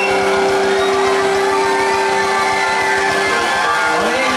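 Live rock band holding one long sustained chord: keyboard and electric guitars ringing on, with a guitar note sliding up and back down over it about midway.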